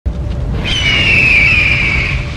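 Logo intro sound effect: a loud, deep rumble that starts abruptly, joined about half a second in by a high, screech-like tone that glides slowly downward.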